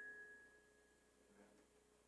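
Final struck notes of a glockenspiel ringing on and fading out within about half a second, followed by near silence.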